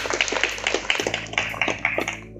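A small crowd clapping: dense, uneven hand claps that stop at the end.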